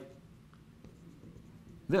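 Dry-erase marker drawing short dashes on a whiteboard: a few faint ticks and light scratches.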